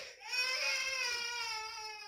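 A baby crying: one long drawn-out wail that starts a moment in and is held to the end.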